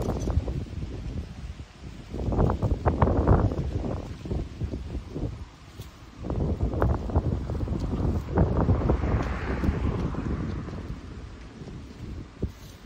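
Wind buffeting the microphone in uneven gusts, with grass and leaves rustling; the gusts swell hardest about three seconds in and again in the middle, then ease near the end.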